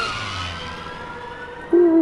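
A siren-like whine with a hiss, its pitch slowly rising and then fading, like a vehicle speeding away. Near the end a louder voice-like sound comes in, falling in pitch.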